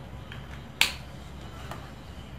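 A single sharp click of a whiteboard marker being handled, about a second in, with fainter ticks before and after.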